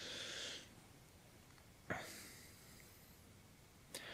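Soft breaths in a pause between spoken phrases: a short breath at the start, then a mouth click about two seconds in followed by a longer, fading breath, and another click and breath at the very end. Faint, with room tone between.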